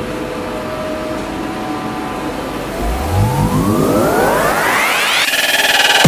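Steady ventilation hum for the first few seconds. From about three seconds in, an electronic synth sweep rises steeply in pitch for about two and a half seconds, then settles into a held synth chord near the end as the music builds toward a dubstep track.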